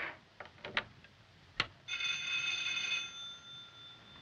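Telephone switchboard in use: a few sharp clicks, then a telephone bell ringing for about a second that dies away.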